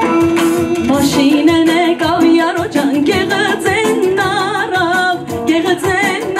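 A woman singing into a handheld microphone, amplified through a PA, with wavering, ornamented held notes over accompaniment with a steady drum beat.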